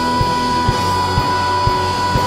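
Live rock band music: a kick drum on a steady beat of about two a second, with guitar and bass, under one long note held at a single pitch.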